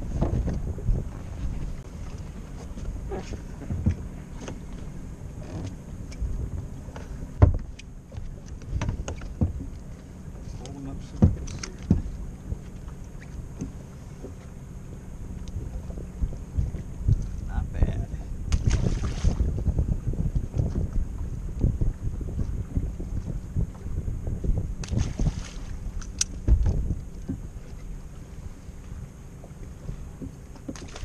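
Wind on the microphone and water lapping against a bass boat's hull, with scattered knocks and clunks on the deck as fish are handled at the livewell.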